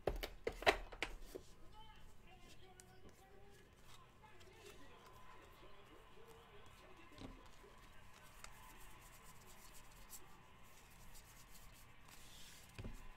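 Trading cards being handled and flipped through by hand, with a few sharp clicks in the first second as the stack is picked up off the table, then faint slides and ticks of card on card.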